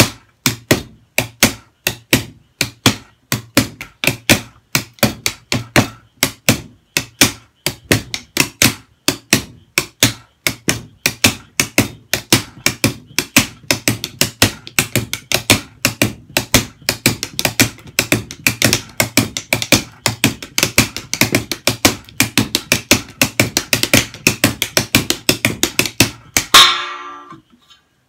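Drumsticks striking a homemade practice pad wrapped in plastic, played as a shuffle beat (swung triplets with the middle note left out) and getting faster. One loudest hit with a short ring comes near the end.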